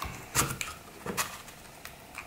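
A few light clicks and knocks as an airsoft electric pistol's gearbox is slid into its plastic grip frame by hand; the loudest click comes about half a second in.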